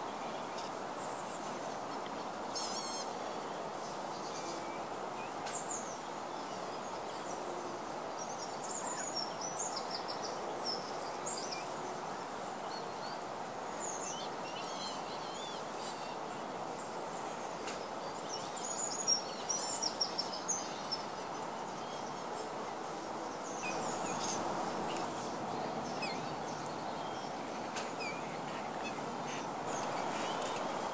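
Outdoor wetland ambience: a steady background rushing noise with scattered short, high bird calls and chirps from small birds, busiest about nine to eleven seconds in and again around nineteen to twenty-one seconds.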